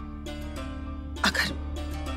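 Soft dramatic background score of sustained, held notes over a low steady drone, with one short vocal sound from a person about a second in.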